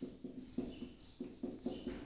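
Felt-tip marker writing on a whiteboard: a string of faint short squeaks and scratches, several a second, as the strokes of the letters are drawn.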